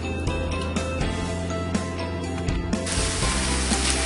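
Background music with a run of light clicks, then about three seconds in a sudden change to ground meat sizzling as it browns in a skillet.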